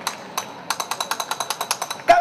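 Flamenco dancer's shoes striking the stage in zapateado footwork: a fast, even run of sharp taps, scattered at first and then about ten a second from about a third of the way in.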